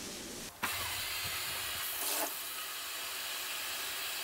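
Kitchen mixer tap turned on about half a second in, water running steadily into a metal stovetop kettle as it fills.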